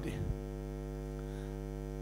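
Steady electrical mains hum, a low buzz with many even overtones holding at one level.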